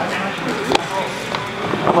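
Indistinct voices and background chatter, with a single sharp knock a little under a second in.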